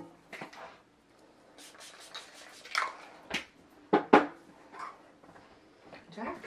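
Scattered knocks, clicks and rustles of things being handled and set down in a small room, with the loudest pair of knocks about four seconds in.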